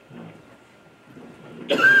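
A man coughs once, sharply and loudly, near the end, between hesitant spoken 'uh's.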